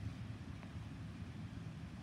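Low, steady outdoor rumble with no distinct event.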